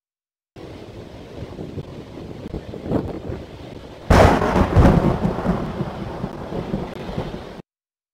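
Thunder sound effect: a low rumble, then a sudden loud crack of thunder about four seconds in that rumbles on and cuts off abruptly near the end.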